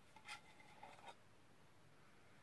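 Faint scraping of the lid of a small candle tin being twisted open, in two short spells with a thin squeak in the first second.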